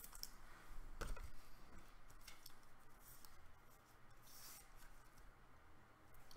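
Faint clicks and rubbing of a trading card and its clear plastic holder being handled, with a brief scrape about four and a half seconds in.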